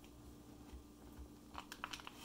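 Faint handling noise: a few soft clicks and rustles as a fork picks at smoked trout inside a plastic vacuum-seal bag, mostly near the end, over a low steady hum.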